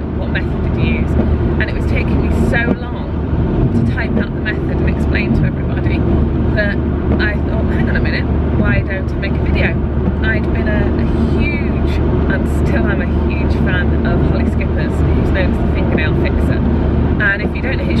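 Steady engine and road noise inside a moving car's cabin, under a woman talking.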